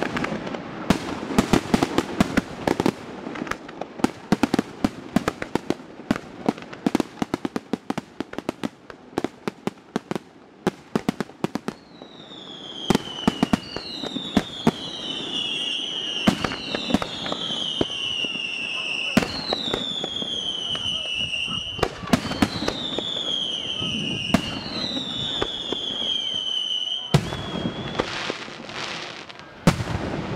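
Aerial fireworks display. For about the first twelve seconds comes a rapid string of sharp shell bursts and crackling reports. Then a run of whistling effects follows, each gliding down in pitch, broken by heavy bangs, and the bursts pick up again near the end.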